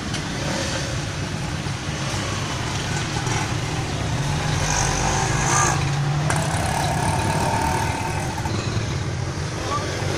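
A vehicle's engine running with a steady low hum, heard from inside its cab, with street traffic around it.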